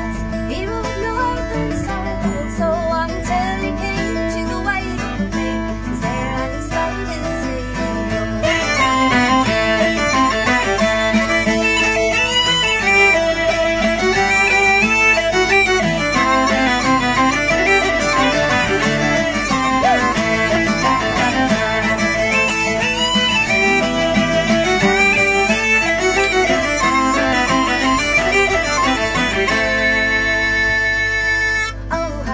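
Instrumental break of a traditional Irish folk song: acoustic guitars strumming chords, joined about eight seconds in by a fiddle taking the melody, and the playing gets louder and fuller.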